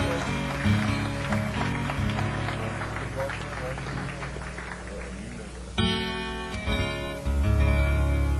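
Live acoustic Piedmont blues in an instrumental break between verses: fingerpicked acoustic guitar with harmonica. A loud held note with a rich, reedy tone comes in about six seconds in, and heavier bass joins a second later.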